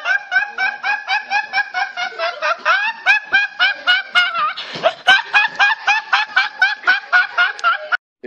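A teenage boy laughing uncontrollably in a high-pitched, rhythmic fit, about four short bursts a second.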